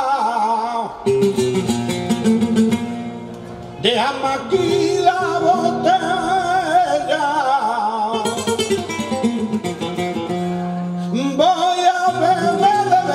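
Live flamenco cante: a man sings in a wavering, ornamented voice over a flamenco guitar. About a second in the voice drops out and the guitar plays strummed chords alone. The singing returns about four seconds in and carries on over the guitar.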